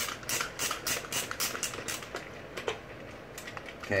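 Red-handled ratcheting screwdriver clicking as it is cranked back and forth to loosen a penny board truck's mounting bolt, about four or five clicks a second. After about two seconds the clicks turn fainter and sparser.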